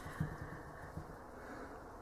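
A pause in speech: quiet room tone with a low steady hum, and two faint soft taps, one just after the start and one about a second in.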